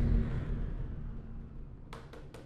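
The low rumbling tail of a transition music sting dying away steadily, with a sharp click near the end.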